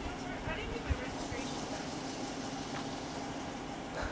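Quiet street ambience: faint distant voices over a steady vehicle hum, with one soft thump about a second in.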